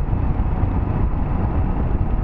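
Riding noise from a Royal Enfield Himalayan's single-cylinder engine and the wind while on the move, a steady low rumble. It is muffled by a plastic cover over the camera's mic.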